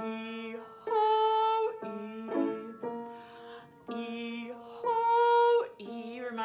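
Woman singing the 'ee-ho-ee' vocal exercise over upright piano notes. She sings a low 'ee', jumps up to a higher 'ho' and drops back to 'ee', twice over. The leap practises the flip between chest voice and head voice across the break.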